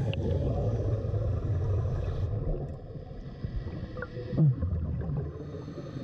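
Underwater rush and bubbling of scuba air being released into an orange inflatable marker bag. The hiss runs in two long gushes, the first stopping about two seconds in and the second about four seconds in, with a deep bubbling rumble under both and a short louder burble just after.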